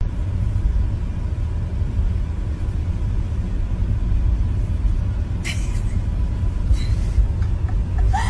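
Steady low rumble of road and engine noise inside a moving car's cabin, with two brief rustles about five and a half and seven seconds in.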